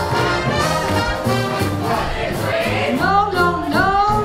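Live swing big band playing at full volume: saxophones, trumpets and trombones over piano, guitar, bass and drums, with a steady swing beat. From about three seconds in, the band plays bending, sliding notes.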